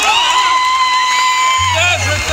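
Concert audience cheering and whistling, with one long whistle held for over a second. A low guitar note sounds near the end.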